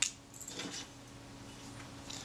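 Small metal camera parts and a small screwdriver handled on a workbench mat: one sharp click at the start, then a few faint taps about half a second in.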